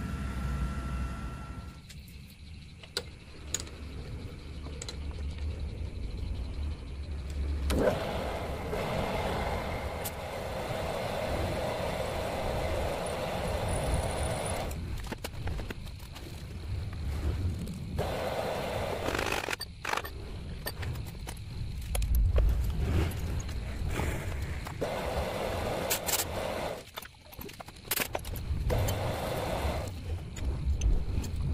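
A machine tool running with cutting noise, heard in several short stretches that change abruptly.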